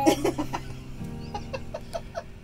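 Short, quick bursts of laughter from a woman and toddler as they hug, over quiet background music.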